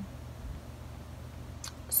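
Room tone in a pause between words: a low steady hum, with a short hiss near the end as the woman starts to speak again.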